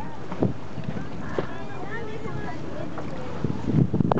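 Steady wind noise on the microphone and the sea aboard a boat, with faint voices of people on board and a few small knocks.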